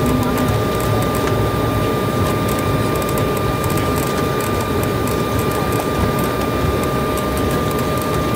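Steady cabin noise of an Embraer 190 rolling down the runway after touchdown, spoilers up: a low rumble from the wheels and turbofan engines with a steady whine over it.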